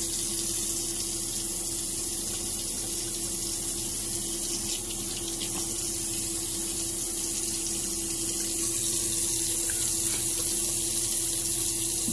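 Bathroom sink tap running steadily, with a low steady hum under the flow.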